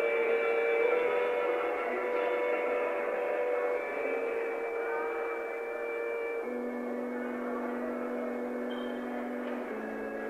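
Electric organ holding slow sustained chords in a lo-fi live recording, with no drums. The chord shifts about four seconds in, and again at about six and a half seconds, when a lower note comes in.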